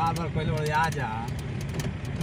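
A car driving on a rough dirt track, heard from inside the cabin: a steady low engine and road drone with many small rattles and knocks. A voice talks over it in the first second.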